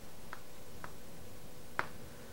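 Chalk clicking against a blackboard as a word is written: three short, sharp ticks, the last and loudest near the end.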